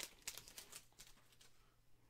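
Faint crinkling of a foil trading-card pack wrapper being pulled open, dying away after about a second.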